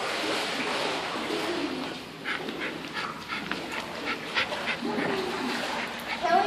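Small dog panting in a quick run of short breaths, with a low whimper.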